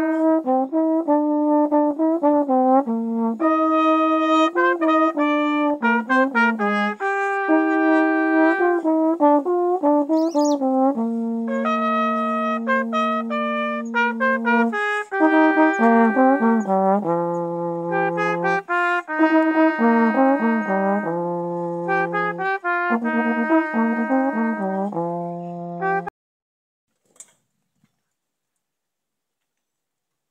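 Trombone playing an exercise: a single line of notes, some held long and some moving quickly, that stops abruptly about 26 seconds in. A faint tap follows near the end.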